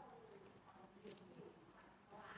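A dove cooing faintly, a low pitched call that glides down, with a few soft clicks about a second in.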